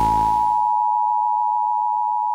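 A test-pattern tone: a single steady pure beep held without change. Under its first second a low hum and hiss fades away.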